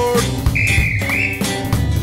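Children's song with guitar and drums ending, its last sung note sliding down at the start. A high train-whistle sound effect is then held for about a second, rising slightly at its end.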